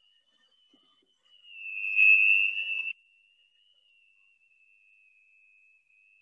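Electric hand mixer running as it beats flour into a thick batter, heard as a thin, high whine that wavers slightly in pitch. The whine is louder for about a second and a half near the middle, then drops back to faint.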